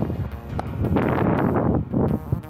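Wind buffeting a small action camera's microphone, a loud gusty rush, with background music underneath.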